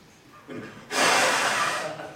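A man blowing out one long, hard puff of breath, about a second long, starting about a second in.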